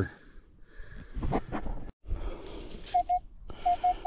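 Minelab Equinox metal detector sounding short, repeated beeps of one steady mid-pitched tone in the last second, signalling a buried metal target that reads 26. Brief rustling and handling noise comes about a second in.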